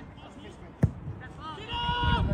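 A football kicked once, a single sharp thud about a second in, over players' shouts on the pitch.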